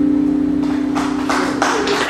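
Live jazz trio of guitar, bass and voice ending on a single held note, with audience clapping breaking in about halfway through.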